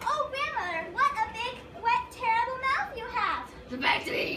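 Children's voices: several kids talking and calling out in quick bursts, with no clear words.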